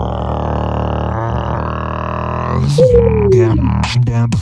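Beatboxing into a cupped handheld microphone: a sustained low drone. About three seconds in, a higher tone slides down in pitch over it.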